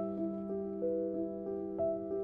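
Slow, gentle background music on a keyboard instrument: single melody notes about three a second over a held low note.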